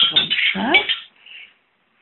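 Bright electronic chime tones from a children's quiz book's electronic answer pen as it touches an answer dot, mixed with a voice. The sound fades and cuts off to silence about one and a half seconds in.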